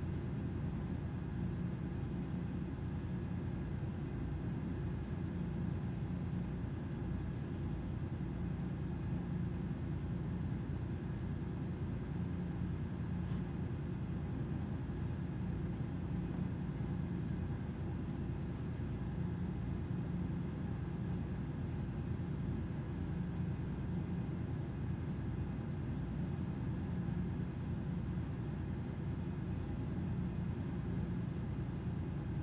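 Steady low rumble of a ship's machinery with a faint constant hum, unchanging throughout.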